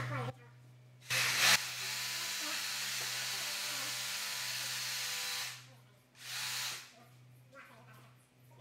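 Handheld electric power saw cutting into a hanging cattle carcass: it runs steadily for about four seconds, stops, then gives one short second burst.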